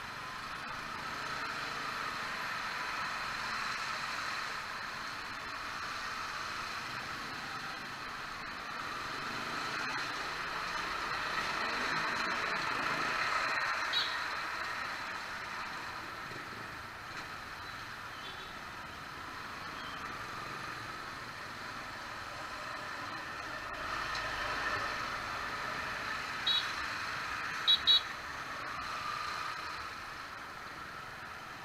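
Motorcycle riding slowly through traffic on a wet, flooded road, with a steady mix of engine and road noise that swells and fades. A short high beep comes about halfway through and three more come near the end.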